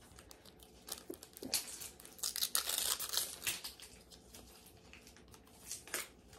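A small sticker packet being ripped open by hand, its wrapper tearing and crinkling in irregular bursts, loudest from about one and a half to three and a half seconds in.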